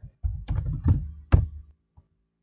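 Computer keyboard keystrokes picked up as dull knocks, with three sharp strokes roughly half a second apart.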